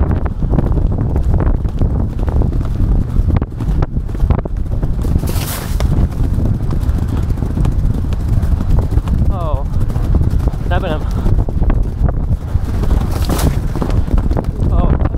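A horse galloping on turf, its hoofbeats under heavy wind buffeting on the rider's camera microphone. There are brief louder rushes of noise about five seconds in and near the end.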